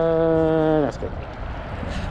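A man's voice holding one long, steady drawn-out word that falls off in pitch and stops about a second in, followed by a steady hiss of wind on the microphone.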